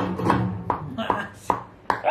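Tabla: a low ringing tone from the bass drum dies away in the first half second, followed by a few sharp single strokes spaced roughly half a second apart.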